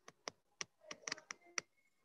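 Faint computer keyboard typing: a short, irregular run of key clicks.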